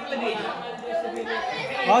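Several people talking over one another, a chatter of voices.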